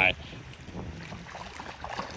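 A man's laugh, cut off right at the start, then low, steady wind noise on the microphone with faint voices.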